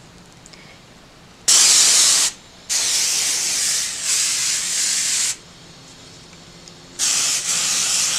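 Salon Line temporary hair-colour aerosol can spraying in three bursts: a short one about a second and a half in, a longer one of nearly three seconds, and a third near the end.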